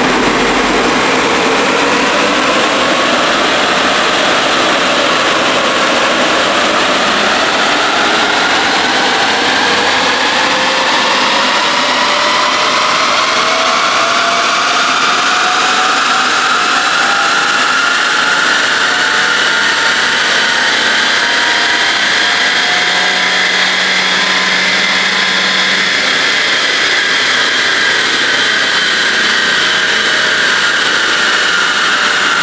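Volkswagen Golf 6 1.4 TSI turbocharged four-cylinder engine pulling under load on a chassis dynamometer during a power measurement run. Its pitch climbs slowly for about twenty seconds and then eases down near the end, over steady rushing noise.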